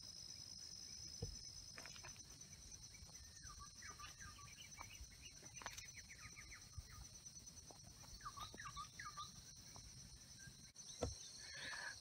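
Faint outdoor ambience: a steady high-pitched insect drone with a few soft, scattered bird chirps.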